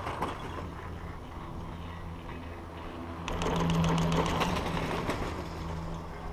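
Chairlift haul rope and chair grip running over the lift's sheaves: a steady low rumble and hum, with a louder run of rapid clattering about three seconds in that fades by about five seconds.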